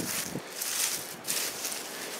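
Irregular soft rustling that comes and goes in short bursts of high hiss.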